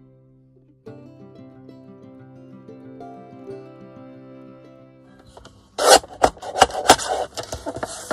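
Instrumental background music, then about six seconds in the lever-arm paper trimmer is brought down through the paper: a loud cut followed by a run of clicks and paper handling.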